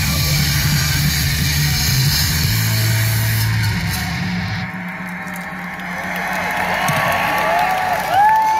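Live band playing loud, distorted rock guitar and bass, which stops abruptly about halfway through. After that comes a quieter stretch of crowd noise, with shouts and cheers building toward the end.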